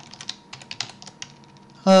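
Computer keyboard keys clicking in short, irregular taps as code is edited.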